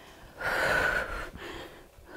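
A woman breathing hard after a burst of exercise: one strong breath about half a second in, then a softer one.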